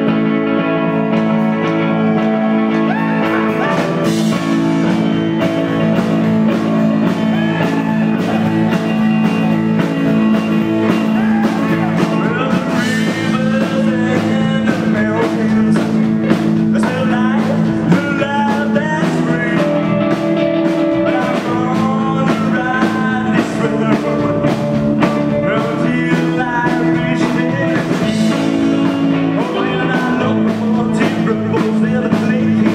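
A live rock and roll band playing loud and steady: electric guitar over a drum kit.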